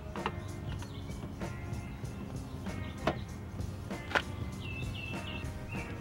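Faint background music with a few light clicks of a screwdriver retightening the door-handle bolt, and a short bird chirp near the end.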